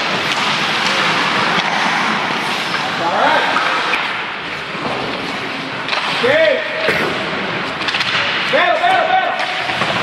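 Ice hockey rink noise: a steady wash of skates and sticks on the ice, with spectators shouting a few times, loudest a little past halfway and again near the end.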